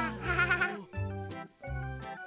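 Background score for an animated scene: held notes over a low note pattern that repeats about every half second. It opens with a short, quavering cartoon voice.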